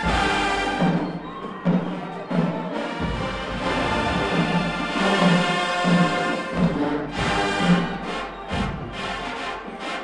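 A large marching band playing in the stands: full brass with sousaphones over a steady drum beat. Sharp percussion hits come in during the last few seconds.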